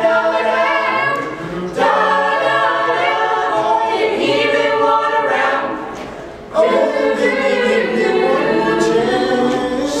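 Mixed-voice a cappella group singing in harmony, with a low sung bass line under the upper voices. The singing thins out briefly about a second and a half in, and fades down just before six seconds before all the voices come back in together.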